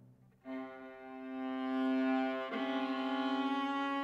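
Solo viola playing long bowed notes: after a brief hush, a held note enters about half a second in and swells, then steps up to a slightly higher sustained note about halfway through.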